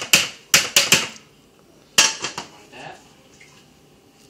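Non-stick frying pan knocking and clattering against a metal sheet tray as it is turned upside down to release a steamed rice sheet: a quick run of sharp, ringing knocks in the first second, then another knock with a few lighter clatters about two seconds in.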